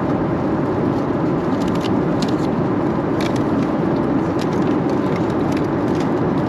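Steady cabin noise of a jet airliner in flight, a low even rush. Plastic food wrappers crinkle in the hands a few times.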